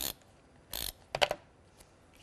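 Handheld tape runner rolled across card: a short rasp a little under a second in, then a brief run of clicks from its mechanism.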